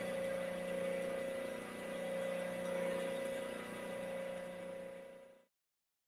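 Steady electric motor hum with a slow rise and fall in loudness, cutting off suddenly about five seconds in.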